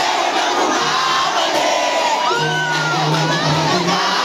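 A dense concert crowd cheering and screaming close around the microphone, over live rap music from the stage sound system, whose low sustained note comes in about halfway through.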